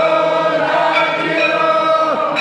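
Several voices singing an aarti hymn together in long, held notes, as a group chant during temple worship.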